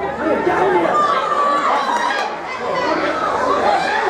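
Many voices shouting at once from a small football crowd and the players as an attack goes into the penalty area, overlapping with no single voice standing out.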